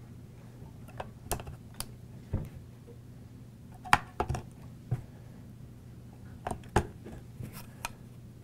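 AA batteries being pushed into a Tascam audio recorder's plastic battery compartment: a series of irregular small clicks and taps as they seat against the spring contacts, over a steady low hum.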